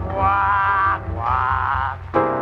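Swing jazz recording with an old, muffled sound: two long held notes, the second wavering with vibrato.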